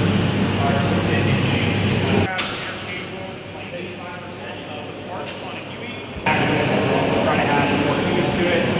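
Voices of people talking in a large hangar over a steady low hum. The hum and the overall level drop away abruptly about two seconds in, leaving quieter talk, and come back just as suddenly about six seconds in.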